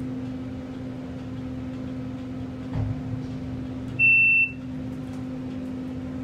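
A 1991 Otis Series 1 hydraulic elevator car travelling up, with a steady low hum of the hydraulic drive. A single short, high electronic beep from the car sounds about four seconds in as the car reaches a floor.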